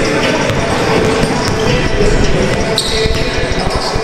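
Basketball being dribbled on a hardwood gym court, with short high sneaker squeaks about three seconds in and again near the end.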